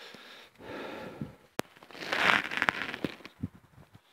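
Handling and movement noise from a handheld camera being carried around a car: uneven rustling and scuffs with a few small knocks, a sharp click about one and a half seconds in, and the loudest rustle a little after two seconds.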